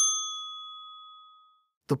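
A single bell-like ding sound effect, struck once and ringing out clearly before fading away over about a second and a half, signalling that the quiz answer time is up.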